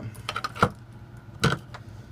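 A few light clicks and knocks, the sharpest about half a second in and another about a second and a half in, over a low steady hum.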